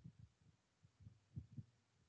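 Near silence, with a few faint low thumps.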